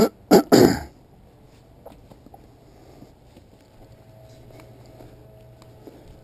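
A person clearing their throat, three short rough bursts in the first second, followed by faint background noise.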